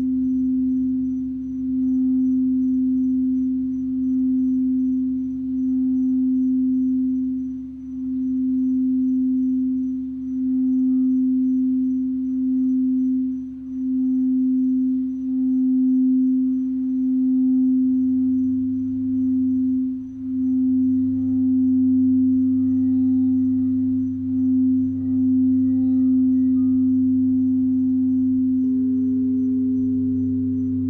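Frosted crystal singing bowl rimmed with a wand, sounding one steady tone that swells and dips about every second and a half. About eighteen seconds in a lower hum grows beneath it, and near the end a second, higher bowl tone joins.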